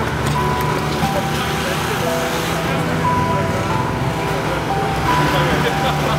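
Music soundtrack: a melody of short held notes over a steady low bass line, with a busy noisy texture and voices in the mix.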